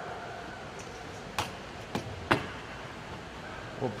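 Three short knocks, about half a second apart, as containers or utensils are handled and set on a countertop, over faint room noise.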